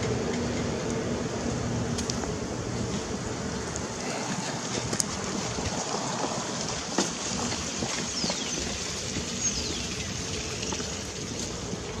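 Steady outdoor background noise, an even rushing hiss, with a few faint clicks. A faint low hum fades out after about two seconds.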